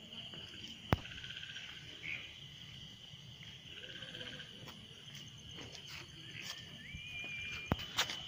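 Crickets chirping in a steady high trill, with two sharp knocks, one about a second in and one near the end.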